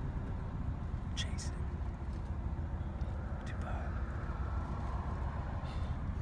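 A low, steady background rumble with a few faint, short clicks.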